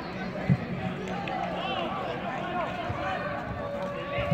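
Shouts and calls from football players and spectators around an outdoor pitch, with a single sharp thud of the ball being kicked about half a second in.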